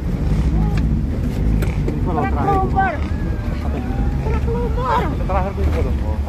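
Off-road jeep's engine running steadily as it drives along a rough dirt track, heard from on board, with people's voices calling out over it a couple of times.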